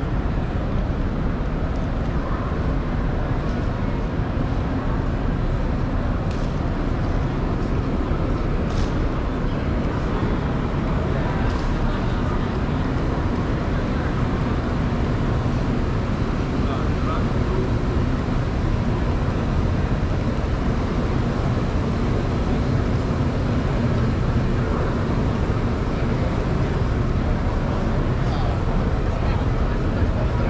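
Steady background din of a large exhibition hall: indistinct crowd chatter over a continuous low rumble.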